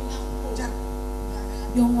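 Steady electrical mains hum from the sound system's amplifier and speakers. Someone says "yuk" briefly near the end.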